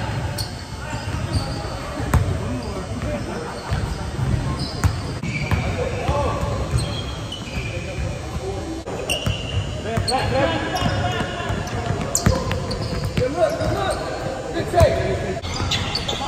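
Pickup basketball on a hardwood gym floor: a ball bouncing, with sneakers squeaking and players calling out to each other, echoing in a large hall.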